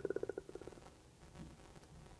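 A man's drawn-out hesitation "uh" trailing off into a creaky, rattling vocal fry and fading out within the first second, followed by quiet room tone.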